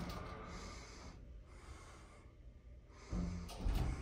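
Montgomery Vector hydraulic elevator car riding down, heard faintly from inside the car: a low steady rumble with a soft hiss that fades and returns. A louder low sound comes about three seconds in as the car nears the floor.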